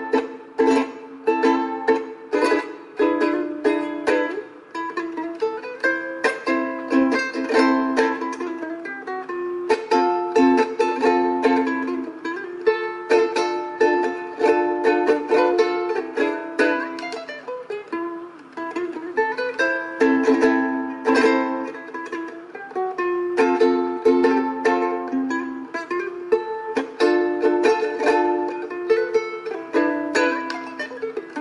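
A ukulele played solo: a quick, continuous run of strummed chords and plucked melody notes with no bass underneath.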